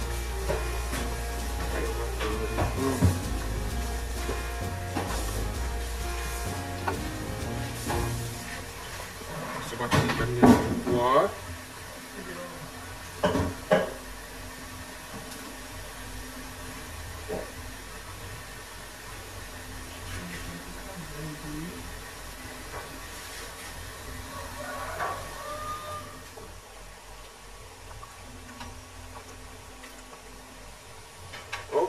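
Fish curry simmering in a non-stick pan while a wooden spatula moves the fish pieces about, over background music and indistinct voice sounds. The music and voices are louder in the first half, with a few short loud sounds a little past the middle of that stretch, then give way to a quieter steady bubbling.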